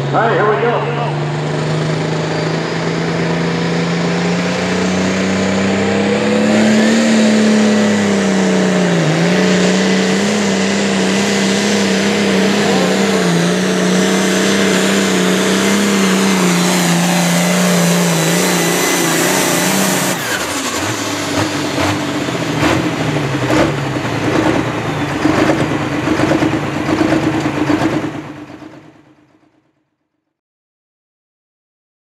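International Harvester hot farm pulling tractor's diesel engine at full throttle pulling the sled, its pitch climbing over the first several seconds and then holding steady under load. About twenty seconds in it comes off the throttle, dropping to a lower, uneven running with several sharp knocks, before the sound fades out near the end.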